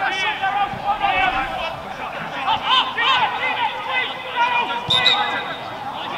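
Several men's voices shouting and calling across an outdoor football pitch, overlapping one another, with a few dull knocks of a ball being played. A sharper knock comes about five seconds in.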